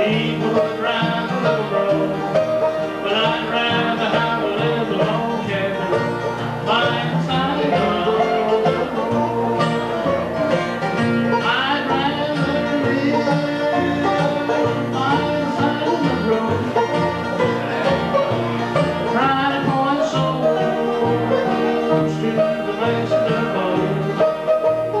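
Live bluegrass band playing: a man singing lead over a strummed flat-top acoustic guitar, a picked five-string banjo and an upright bass.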